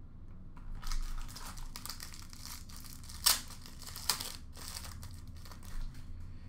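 Crinkling and rustling of trading-card packaging as hands dig into an opened box and pull out a card, with two sharp clicks about three and four seconds in.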